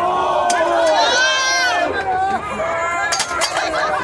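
Crowd of wrestling spectators shouting and cheering close around a ringside brawl, many voices overlapping with some high-pitched shouts. A few sharp smacks cut through about half a second in and again just after three seconds.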